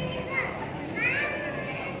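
Young children's voices amplified through stage microphones, with high calls that rise and fall about half a second and a second in.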